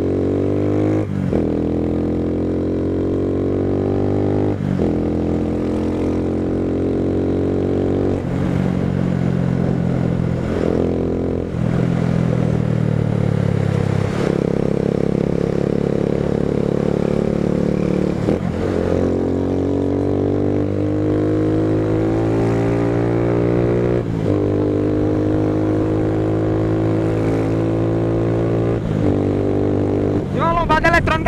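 Motorcycle engine accelerating hard through the gears. Its pitch climbs in each gear and drops back at each of several quick upshifts, over a low wind rumble.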